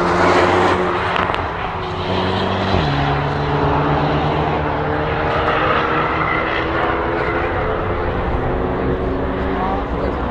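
Road cars' engines running as they drive through a race-track corner, several engine notes layered over tyre and road noise. The engine pitch steps down suddenly about three seconds in.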